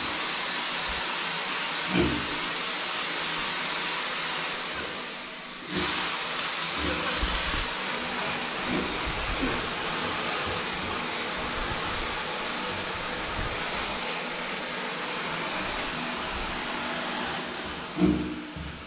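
Handheld shower spraying water steadily over a micro pig and the tiled floor, briefly cutting out about five seconds in. Over the spray, the pig gives several short low grunts in the first half.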